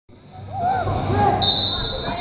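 Referee's whistle blown to start a wrestling bout: a high, steady blast that begins about halfway in, over shouting voices in a gym.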